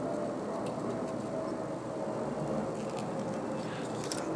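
Steady low hiss of room tone, with one or two very faint ticks.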